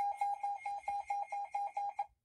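Midland WR120B weather radio's built-in beeper sounding a rapid, even run of high electronic beeps, about six a second.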